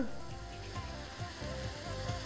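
Sliced onions and green pepper strips sizzling quietly in a stainless steel sauté pan, under soft background music with held notes.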